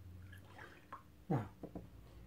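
Faint water sounds of a watercolour brush being rinsed in a water pot, with a light click or two.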